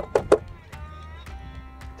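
A chef's knife chopping parsley on a cutting board, about three quick strikes near the start. Then background music with held notes.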